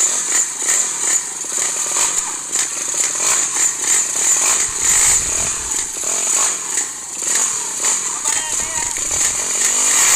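Motorcycle engines revving with a high buzz, the level rising and falling unevenly, over a crowd of voices talking and calling out.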